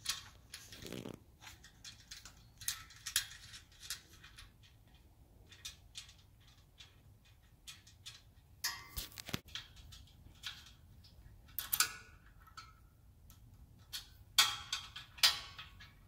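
Small metal clicks and taps as lock nuts are turned by hand onto bolts through a metal hand-truck frame, coming in scattered, irregular bunches that grow busier in the second half.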